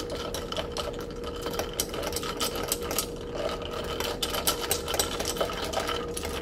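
A metal straw stirring iced coffee in a glass mason jar, clinking and rattling rapidly and without a break against the glass and the ice. A faint steady hum runs underneath.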